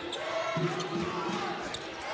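Basketball dribbled on a hardwood court, a run of bounces, with voices in the background.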